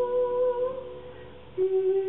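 A female singer holding a long, slightly wavering note over sustained piano. The note fades well before the midpoint, and a new, lower held note enters with fresh chord tones about one and a half seconds in.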